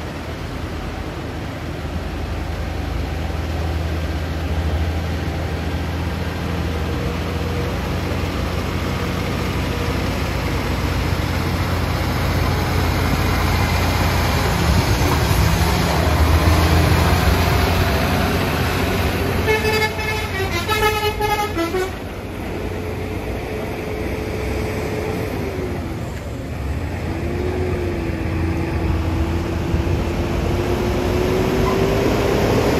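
Heavy MAN TGS 6x4 truck's diesel engine running with a deep rumble, growing louder through the first half as it pulls a 55-ton crane load. About two-thirds of the way in, a vehicle horn sounds for about two seconds. Near the end a whine slowly rises in pitch.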